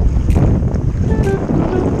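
Wind rumbling on the microphone over shallow sea water. Under it, background music plays a few stepped melody notes with a light tick about once a second.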